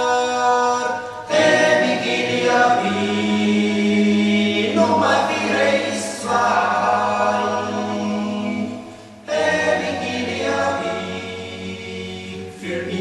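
Music soundtrack of voices singing long held chords without instruments, choir-like, with a sustained low note under the middle part. There are brief breaks between phrases about a second in and about nine seconds in.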